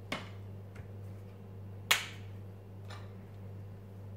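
A few short clicks from handling a plastic syrup bottle on a kitchen counter, the loudest a sharp plastic snap about two seconds in, over a steady low hum.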